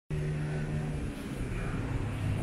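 A motor vehicle's engine running steadily: a low, even hum with outdoor background noise.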